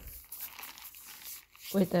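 Faint rustling and crinkling with a few small clicks from hands handling a plastic water bottle in a stretchy fabric cover. Speech begins near the end.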